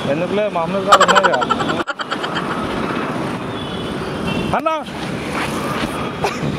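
Street traffic noise from motorbikes and other vehicles on a busy road, with people talking over it. The sound cuts out briefly about two seconds in.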